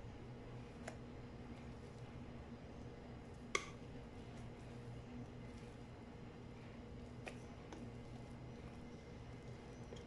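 Quiet scraping of thick cake batter out of a glass bowl into a tube pan with a wire whisk. It is heard mostly as a few faint clicks of the whisk against the bowl, the sharpest about three and a half seconds in, over a steady low hum.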